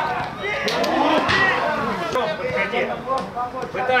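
Shouting voices of players and coaches on a football pitch, with a few sharp knocks in between, the first ones about a second in.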